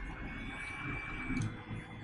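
Low room tone and microphone hiss, with a faint thin high tone that holds for about a second in the middle.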